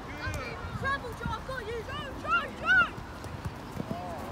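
Players and touchline spectators at a youth football match shouting short wordless calls, several voices overlapping, with two louder shouts about two and a half seconds in.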